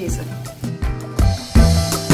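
Background music with bass and drums keeping a steady beat.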